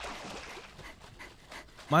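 A steady, breathy hiss from the anime episode's soundtrack, played back under the reaction, with a word of speech starting right at the end.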